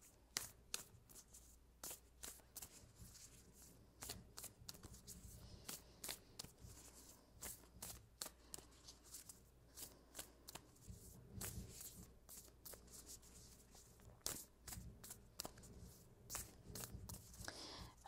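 A deck of Moonology oracle cards being hand-shuffled, giving faint, irregular clicks and light slaps as the cards slide and knock together.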